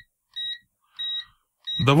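Continuity-test beeper of a Venlab VM-200M digital multimeter sounding three short, high beeps about two-thirds of a second apart. Each beep sounds as the probe tips touch and close the circuit, and the beeper responds quickly.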